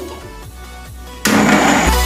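Electric blender switching on about a second in and running loudly as it blends, over electronic background music whose heavy bass comes in near the end.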